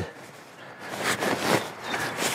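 Rustling of a down quilt's lightweight Pertex nylon shell as it is handled and smoothed over a sleeping pad. Quiet for the first second, then a steady rustle.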